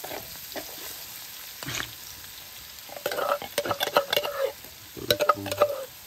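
Food frying in hot oil in a blackened metal wok, sizzling steadily, while a metal spatula stirs and scrapes against the pan in several bouts.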